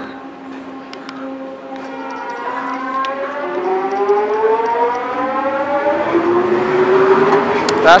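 Mark I SkyTrain pulling away under its linear-induction-motor propulsion, a whine of several tones rising steadily in pitch and growing louder as the train gathers speed, over a steady lower hum.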